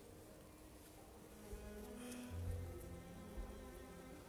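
Soft background music: a sustained, droning chord with a low bass swell a little past the middle.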